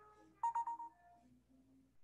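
Short electronic tone from a smartphone in use for texting: a few quick pulses about half a second in, lasting roughly half a second.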